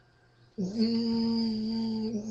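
A wordless human vocal tone, a steady hum or moan held on one pitch, starting about half a second in and lasting about a second and a half.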